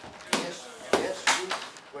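Boxing gloves smacking into focus mitts held by a coach: three sharp punches, the last two close together.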